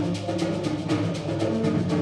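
A school concert band playing, with sustained pitched notes under percussion keeping a steady, even rhythm of about six strokes a second.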